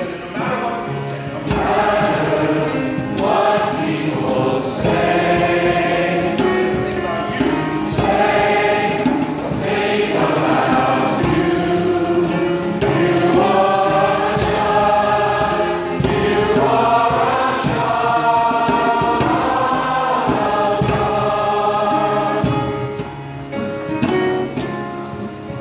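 Mixed senior high choir singing in many voices, holding sustained chords that shift from phrase to phrase, easing off slightly near the end.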